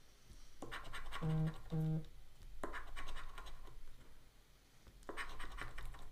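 A paper scratch-off lottery ticket being scratched with a round scratcher, in three bouts of quick strokes with short pauses between. Two short low hummed notes come about a second in.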